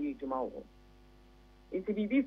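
A woman's voice over a telephone line speaks briefly, then pauses for about a second, and a steady electrical hum on the line is heard in the gap. Speech resumes near the end.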